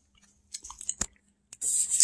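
Someone chewing food with small soft mouth sounds, and a single sharp click about a second in.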